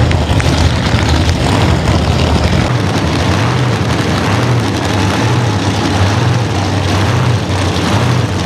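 Supercharged AA/gasser drag-car engines idling loudly at the start line. From about three seconds in, the sound settles into an uneven lope of a little under two pulses a second.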